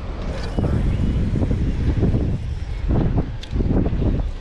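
Strong wind buffeting the microphone, a loud rumbling roar that swells and dips in gusts.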